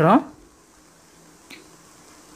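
Plastic craft wire being handled during basket weaving: a faint, even background with one short, sharp click about one and a half seconds in, after a spoken word trails off at the start.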